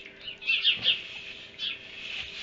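Small birds chirping, with a quick run of short falling chirps about half a second in and another near the end. Under them is the soft rustle of a horse rolling in wood-shaving bedding.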